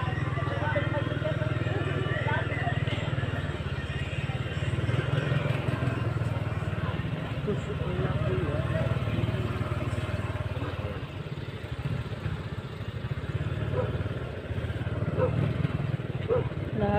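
Motorcycle engine running as the bike rides through city traffic, with a steady low rumble from the engine and the road on the microphone.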